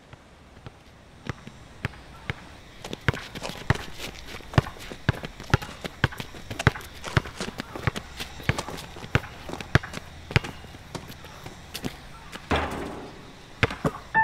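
A basketball dribbled on an outdoor asphalt court, bouncing about twice a second, with the lighter scuffs and taps of sneakers moving between the bounces. A louder, longer scuffling burst comes near the end.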